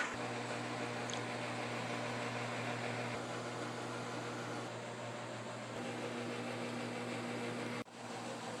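Electric box fan running: a steady low hum with an even airy hiss.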